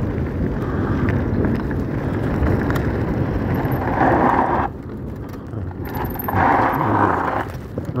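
Mountain bike rolling down a loose gravel track: a steady rumble of tyres on gravel, with two louder bursts of gravel noise about four and six and a half seconds in.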